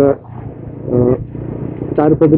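TVS Apache motorcycle running steadily at road speed, its engine and wind noise heard from the rider's position, with a brief spoken syllable at the start and another about a second in.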